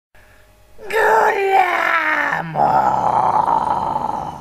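Harsh extreme-metal vocal with no instruments: a loud, drawn-out groan that slides down in pitch for about a second and a half, breaks off, then drops into a lower, rougher sustained growl.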